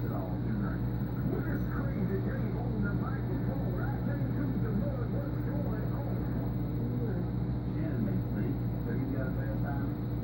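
Steady low hum of aquarium equipment, an air pump driving sponge filters and airstones, with indistinct voices talking in the background.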